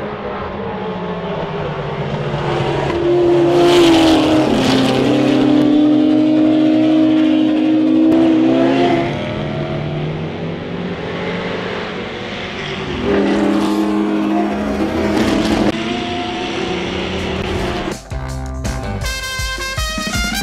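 Ford GT40 race cars' V8 engines at racing speed, passing by twice with engine notes rising and falling, loudest about three seconds in and again about thirteen seconds in. Music comes in near the end.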